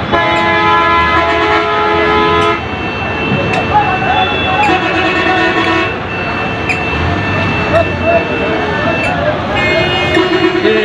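Vehicle horns honking in road traffic: one long blast for the first couple of seconds, another around five seconds in, and a rapid stuttering honk near the end, over a steady din of traffic and voices.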